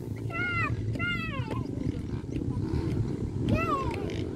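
Dirt bike engines revving on the track: three quick rises and falls in pitch over a steady low rumble.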